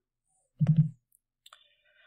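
A single short, loud click with a brief low voiced sound about half a second in, then a faint click and a faint thin high tone near the end; quiet otherwise.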